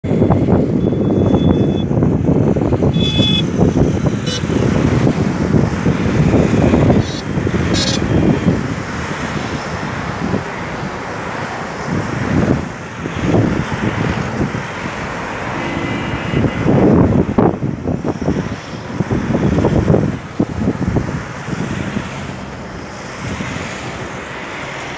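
A convoy of Mahindra Bolero and Scorpio SUVs and motorcycles driving past one after another, engine and tyre noise swelling and fading as each goes by, with a short horn toot now and then.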